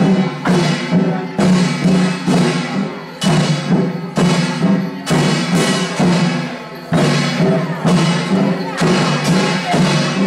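Flower-drum troupe music: drums and percussion strokes keep a steady, regular beat over a sustained melody.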